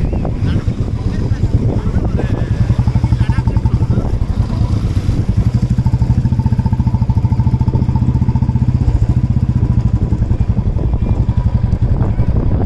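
Royal Enfield Classic 350 single-cylinder motorcycle engine running steadily under way, its exhaust beats pulsing evenly.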